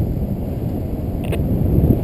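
Wind rushing over the microphone of a camera carried on a paraglider in flight, a steady low rumble, with one brief click a little past the middle.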